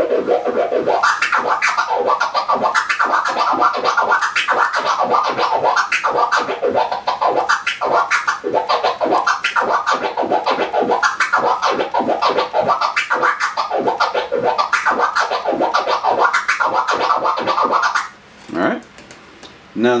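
Vinyl record scratched on a turntable with continuous open-fader flare scratches: the crossfader clicks once on each forward and each backward push, chopping the sample into a fast, even stream of cuts, accented in groups of six. The scratching stops about two seconds before the end.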